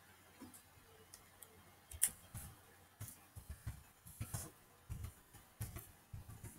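Typing on a computer keyboard: an irregular run of quiet key clicks and taps, a few per second, starting about half a second in.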